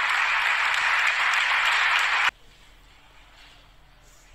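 Audience applauding, which cuts off suddenly a little over two seconds in.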